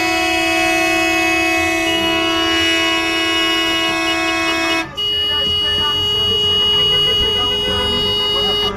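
Vehicle horns in a passing motorcade, held in long steady blasts. One horn sounds for about five seconds and cuts off, and a slightly higher-pitched horn takes over almost at once.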